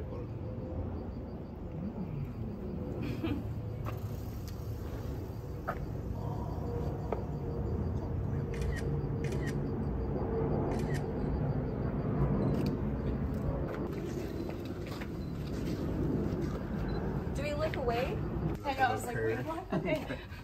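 Indistinct voices talking and laughing over a steady low rumble, with a few faint clicks.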